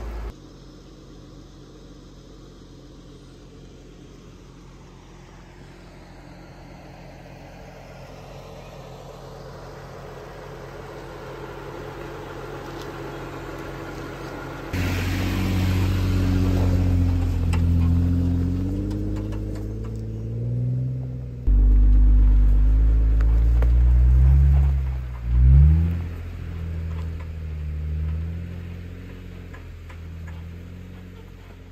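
Jeep Wrangler engine crawling over a rocky trail in four-low, first gear. It is faint and slowly grows louder at first. Then it is loud, its pitch rising and falling with the throttle, with a short sharp rev near the end.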